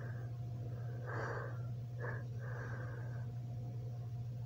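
A steady low hum, with three short breath-like puffs of noise: one about a second in, a brief one near the middle, and a longer one soon after.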